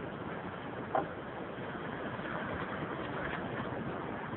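Steady outdoor seaside noise of wind and surf, with one short click about a second in.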